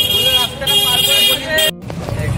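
A vehicle horn in street traffic sounds two blasts, each under a second long and at the same pitch, with voices talking over it.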